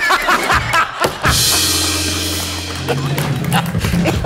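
Live house band plays a short comic sting after a punchline: a drum and cymbal crash about a second in, ringing on over held bass notes that shift near the end. Laughter is heard at the start.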